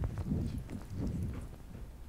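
Handheld microphone being passed to an audience member: irregular low thumps and knocks of handling noise.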